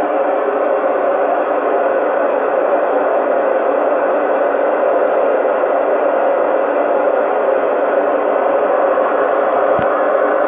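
FM receiver hiss from a Yaesu FT-991 transceiver on the 2 m band: a loud, steady rush of white noise with no voice coming through, the sound of an open squelch with no usable signal. A couple of faint clicks near the end.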